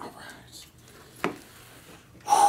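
Small cardboard shipping box handled and set down on a wooden table, with faint rustling and one sharp knock just over a second in.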